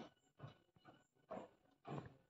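Faint footsteps on a staircase, about two steps a second, as a woman walks down the stairs.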